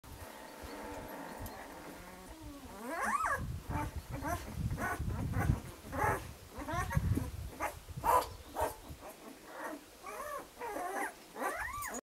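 Newborn puppy squealing and whimpering: a string of high-pitched squeals that rise and fall, coming one or two a second from about three seconds in.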